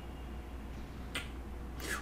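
A pause in a video-call conversation: a steady low hum of line or room noise, with one short sharp click about a second in.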